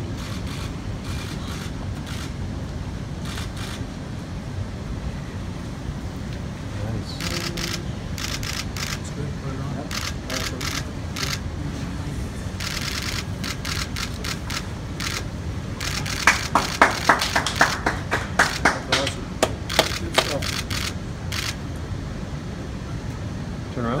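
Camera shutters clicking in short bursts over a steady room hum, with a louder, quicker run of clicks for several seconds past the middle.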